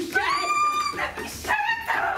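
A high-pitched whining cry that rises and is held for about a second, followed by shorter, lower cries near the end.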